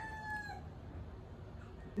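A rooster crowing, its long call ending about half a second in, followed by quiet background.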